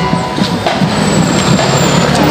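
Loud marching band playing in a street parade, with drums over a dense, noisy mix of street sound.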